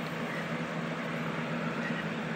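Steady low hum with an even hiss over it, unchanging throughout: the background noise of the room, with no distinct sound events.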